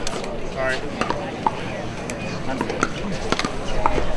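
Low chatter of spectators and players between points, with a few sharp taps scattered through.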